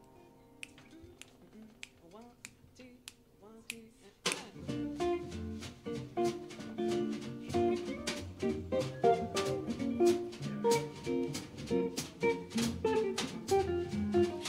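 Soft clicks keeping a steady beat as a count-in, then about four seconds in a jazz combo comes in together: piano chords, walking upright bass, drums with regular cymbal strokes and guitar, playing a swing intro.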